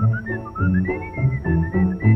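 A jaunty tune whistled by a man, the melody sliding up and down, over a plucked bass line of about three notes a second: a cartoon soundtrack.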